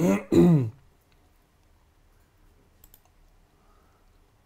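A man coughs twice in quick succession, then a few faint computer-mouse clicks in a quiet room.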